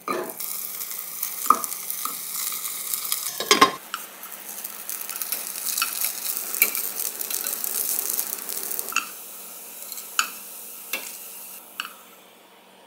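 Battered gimmari (fried seaweed rolls) sizzling and crackling in hot oil in a saucepan, with sharp taps of chopsticks against the pan, the loudest about three and a half seconds in. About nine seconds in the sizzling drops to a much softer crackle as the rolls are lifted out.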